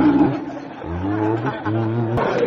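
A woman's voice run through a soundcard voice effect that pitches it very deep, making wordless, drawn-out vocal sounds.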